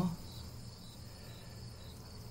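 Faint steady background noise: a thin high-pitched whine held on one pitch over a low hum, with the end of a spoken word right at the start.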